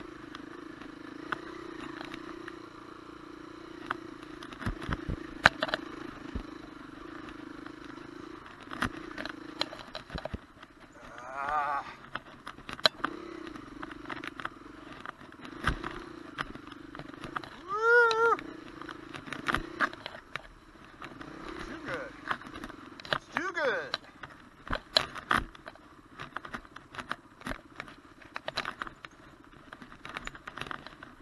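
Dirt bike engine running steadily at low revs while riding a forest trail, with frequent sharp knocks and clatter from the bike over the ground. A few short rising-and-falling pitched sounds stand out, the loudest about eighteen seconds in.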